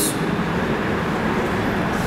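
Steady background noise with a low hum, unbroken through the pause in speech.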